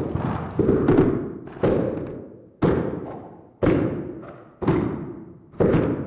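Low, heavy drum-like hits from a film score, six of them at a steady pace of about one a second, each ringing and fading away before the next.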